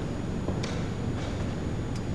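Steady low room rumble with a few faint clicks, about three in two seconds, from play at a blitz chess board: pieces set down and the chess clock pressed.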